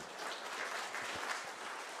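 Applause from many people in a council chamber, hands clapping steadily at the close of a speech.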